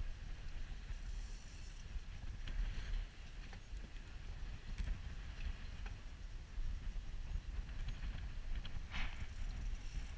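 Wind rumbling on the camera microphone aboard a small boat at sea, with a few faint clicks and a brief hiss about nine seconds in.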